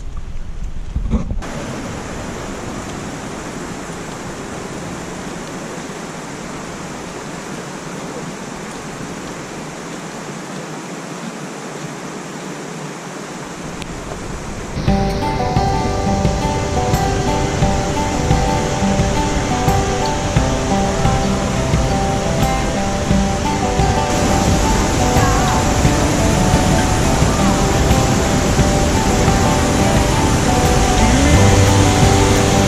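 Steady rush of a waterfall, an even hiss of falling water. About halfway through, background music with sustained notes starts and plays louder over the water.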